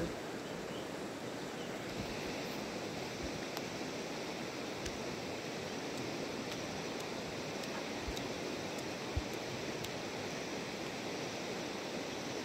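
A steady rushing noise, like a flowing river or wind over the microphone, with a few faint ticks.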